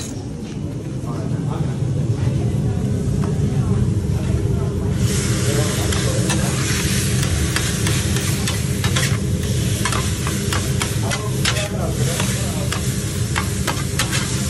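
Chopped chicken sizzling on a steel flat-top griddle, the sizzle rising sharply about five seconds in. A metal spatula scrapes and chops against the griddle in repeated sharp strikes, over a steady low hum.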